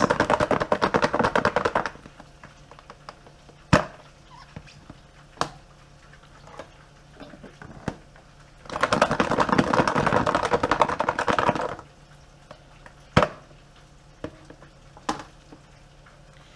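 Cooked, sauced chicken wings shaken inside a closed plastic food container: a dense, rapid rattle for about two seconds at the start, then again for about three seconds in the middle. A few single sharp knocks fall in between.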